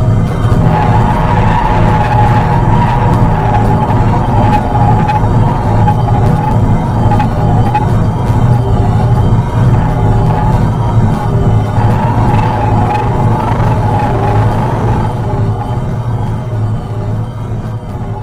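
Electronic sound-design drone made with iPad synth and effects apps: dense layered sustained tones over a steady low hum. A higher tone swells in and out over it, and the whole sound slowly fades near the end.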